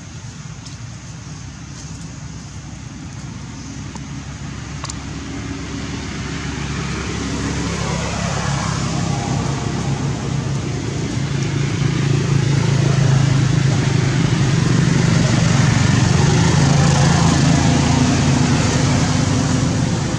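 A motor vehicle engine running nearby, a steady low hum that grows louder over the first dozen seconds and then holds.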